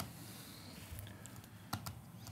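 Quiet room tone with a faint low hum, broken by a few light, irregular clicks or taps, two of them close together near the end.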